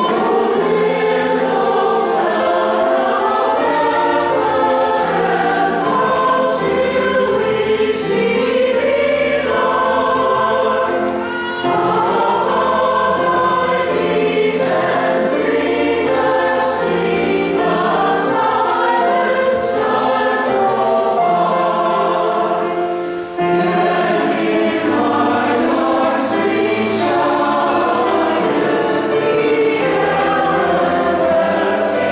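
Mixed church choir singing a Christmas cantata, with two short breaks between phrases.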